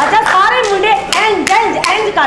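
A few sharp hand claps as audience applause thins out, with a voice speaking loudly over them.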